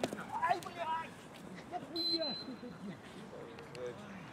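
Football players shouting across the pitch, with a short, thin, high whistle tone about halfway through.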